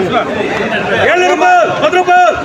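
Men's voices talking over one another. From about a second in, one man's voice calls out in a rhythmic sing-song, the same rising-and-falling phrase repeated about twice a second.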